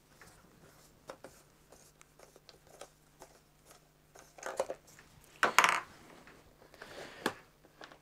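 Light handling noises from a radio-controlled truck's rear wheel and hub being worked by hand: scattered small clicks of plastic parts, with a short louder rub about halfway through.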